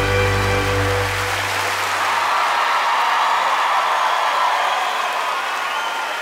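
A male singer's final held note, wavering slightly, and the band's last chord end about a second in. Then a concert audience applauds steadily.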